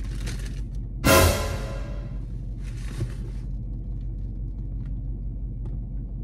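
A sudden dramatic boom, like an edited-in music sting, about a second in, ringing out over about a second. Paper rustles twice, at the start and around three seconds in, over a steady low rumble inside the car.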